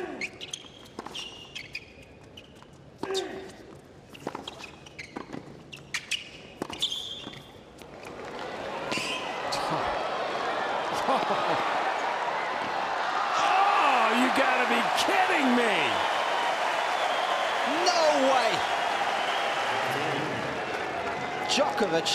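Tennis rally on a hard court: sharp ball strikes off rackets and shoe squeaks over a hushed stadium. From about eight seconds in, the crowd noise swells into loud, sustained cheering and shouting that holds until near the end.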